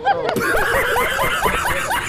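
A group of people laughing together, several voices overlapping in short bursts of giggles and chuckles.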